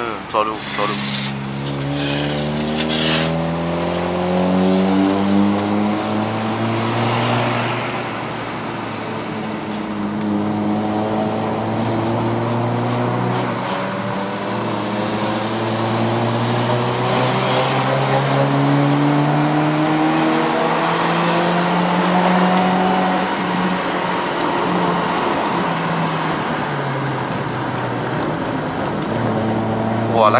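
The Honda City's 1.5-litre i-VTEC four-cylinder engine heard from inside the cabin, pulling uphill through a five-speed manual gearbox. Its pitch climbs in several long sweeps, each followed by a sudden drop. There is no CVT whine, since the car's CVT has been replaced by the manual.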